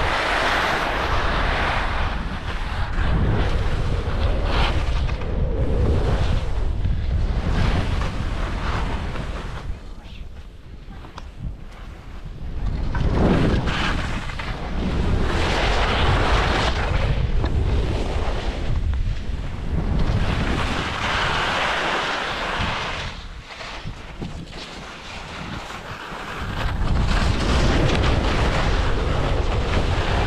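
Wind buffeting the microphone and skis hissing through snow on a downhill run. The rushing noise swells and eases in long surges, with two quieter lulls.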